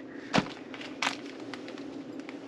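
Handling noise as small items are rummaged out of a fabric pouch: a soft thump about a third of a second in and a lighter click or rustle about a second in, over quiet room hiss.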